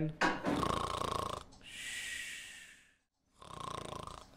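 A person voicing a snore for a sleeping character: a rasping snore in, then a long hissing breath out. After a brief pause, a second snore begins near the end.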